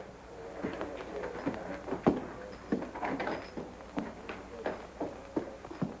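Footsteps of two men walking across a hard floor: a dozen or so sharp, uneven knocks over a faint steady hum.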